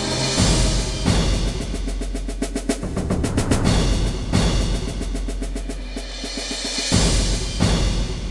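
Dramatic soundtrack music driven by timpani and drums, with fast rolls and heavy hits about half a second in, midway and near the end.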